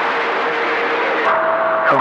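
CB radio receiver hissing with static between transmissions, with a steady whistle over it from another station's carrier that jumps to a higher pitch a little past halfway.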